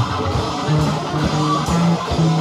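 Live punk rock band playing an instrumental passage: electric guitar and bass guitar holding low notes.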